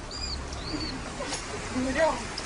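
Rat squeaking: two short, high-pitched squeaks within the first second as it faces off a cat.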